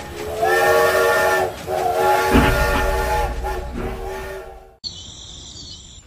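Steam-train whistle: a chord of several steady tones over hiss, a short blast and then a longer one held about three seconds. A low thud comes partway through the long blast, and near the end a quieter, thin high hiss.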